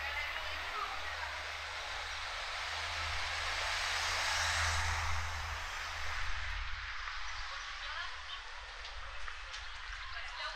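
Outdoor street ambience: a rushing noise swells to a peak about halfway through and then fades. Faint voices of passers-by can be heard under it.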